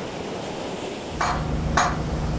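Surf and wind noise, then about a second in a low steady machine hum starts with two brief sharp sounds over it. The hum is most likely the power unit driving the hydraulic jacks as their pressure is run up.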